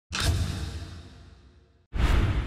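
Cinematic intro sound effect: a sudden deep boom with a swoosh that fades away over about a second and a half. A second identical hit starts just before the end, as the title text appears.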